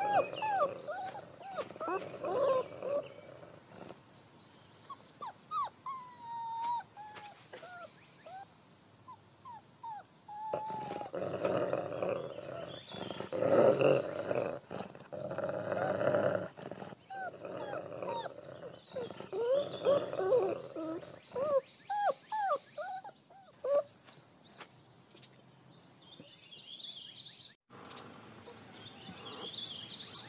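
Wolf pups whimpering and squeaking in many short, high, bending cries, busiest about halfway through. Faint bird chirps follow near the end.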